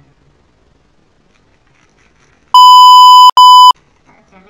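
A loud, steady, high-pitched electronic beep tone, sounded twice: a long beep of about three-quarters of a second, a brief break, then a shorter beep, like a censor bleep added in editing.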